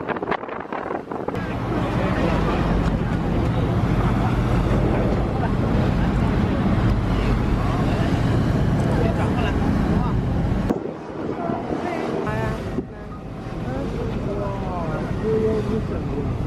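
Steady low drone of a ferry's engine mixed with wind on the microphone, with voices talking in the background; it drops suddenly about two-thirds of the way through, and again a couple of seconds later.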